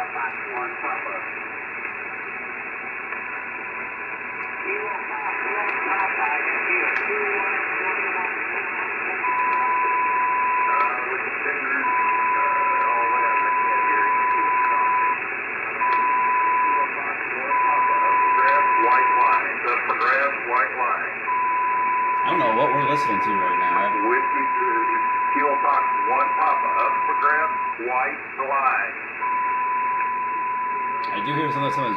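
HF transceiver's receiver audio on single sideband: steady band noise with faint, garbled voices of distant stations. From about nine seconds in, a steady whistle near 1 kHz cuts in and out several times, the beat note of a carrier on or near the frequency.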